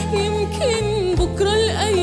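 A woman singing a slow, ornamented Arabic song, her melody wavering and gliding between notes, over steady sustained instrumental accompaniment.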